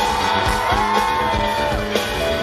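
A live band playing, with a long held high note that rises slightly over a steady drum beat.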